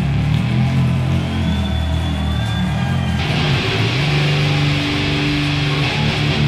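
Live electric guitar solo from a rock band, played as long held notes over low sustained tones, with the texture changing about three seconds in.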